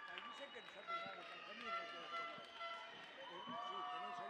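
Layered, overlapping voices fading in from silence, some holding long notes, as the quiet opening of a dance piece's soundtrack.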